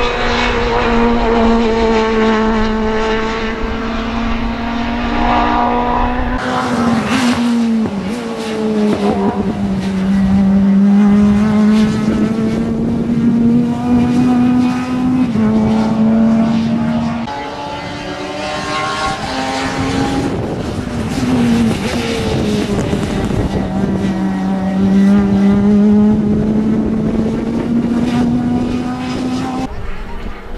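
Race car engines running at high revs around a circuit. The note holds steady between several sudden drops and downward bends in pitch.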